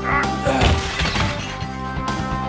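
Film fight-scene soundtrack: sustained score music with a crashing impact sound effect about half a second in.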